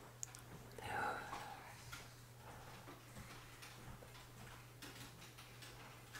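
Quiet room with a steady low hum. About a second in there is a soft, breathy exhale, and a few faint clicks follow.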